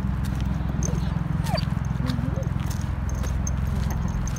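Footsteps of a person and a dog on a dirt-and-gravel path, as short irregular clicks over a steady low rumble. A couple of short gliding calls come about halfway through.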